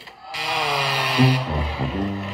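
Studio audience groaning in disappointment, then the game show's low descending 'losing horns' cue, a few brass notes stepping down near the end: the sign that the contestant's guess was wrong and the game is lost.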